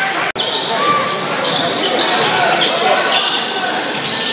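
Basketball being dribbled on a hardwood gym floor during a game, with short high-pitched sneaker squeaks and crowd voices echoing in the gym. The sound cuts out for an instant about a third of a second in.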